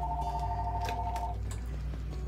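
Telephone ringing: a steady two-tone electronic ring that stops about a second and a half in as the call is answered.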